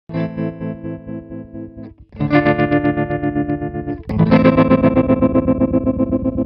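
Electric guitar played through a Tremolio transistor tremolo pedal: three distorted chords, each let ring about two seconds, their volume pulsing in a steady throb from the tremolo.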